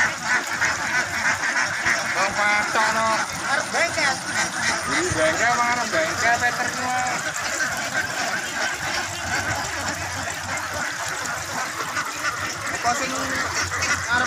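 A flock of Javanese ducks quacking, many calls overlapping, with separate loud calls standing out in the first half.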